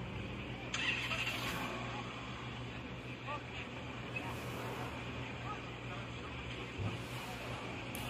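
A sports car's engine running at idle with a steady low hum, and a short louder burst of noise about a second in. People talk faintly in the background.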